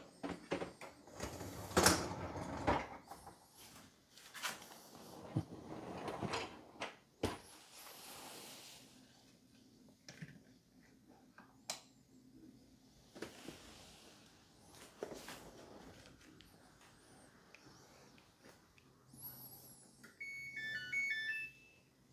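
Dishwasher racks and door being handled: scattered knocks, clicks and rattles. Near the end comes a short electronic melody of stepped beeps from the Samsung Bespoke dishwasher's control panel as it is switched on.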